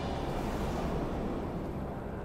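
Steady rushing ambient noise that fades slightly near the end.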